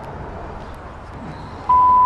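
Steady outdoor background hum, then near the end a single loud, steady beep from a Panasonic cordless phone's answering machine, marking the start of playback of a recorded message.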